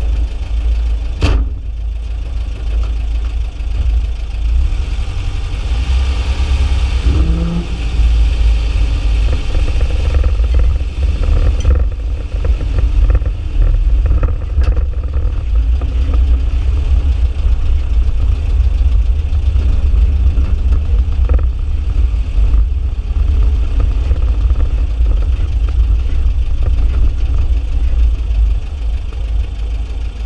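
Vintage Volkswagen Beetle's air-cooled flat-four engine running as the car drives, heard from inside the cabin, with a sharp door slam about a second in.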